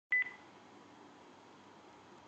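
A short, high electronic beep just after the start, in two quick pulses, followed by faint steady hiss.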